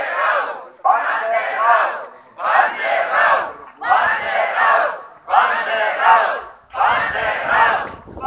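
A crowd of protesters chanting a short slogan in unison, over and over, about once every one and a half seconds.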